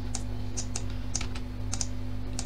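A handful of sharp computer clicks, about one every half second with some in quick pairs, from a mouse and keyboard used to drive the software. Under them runs a steady low electrical hum.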